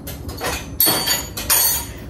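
Dishes and kitchenware knocking and clinking as a dishwasher is loaded: a run of sharp knocks, with a short ringing clink about a second in.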